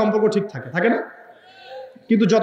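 A man's preaching voice through a microphone: the end of a drawn-out, wavering phrase that glides down and back up, stopping about a second in, followed by a quiet pause.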